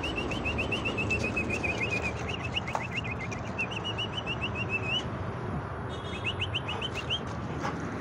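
A bird chirping in a rapid run of short, rising high notes, about five a second. It breaks off about five seconds in and resumes for a second before stopping.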